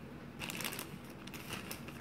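Packaging crinkling as it is handled, in two short bursts of rustling.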